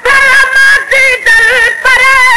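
A high solo voice sings a Sindhi naat (molood) in an ornamented style, wavering and sliding between held notes.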